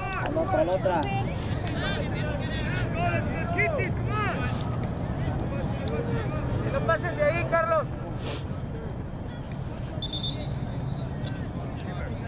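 Distant, indistinct shouting and calling voices of players and spectators across a soccer field, thinning out after about eight seconds, over a steady low rumble.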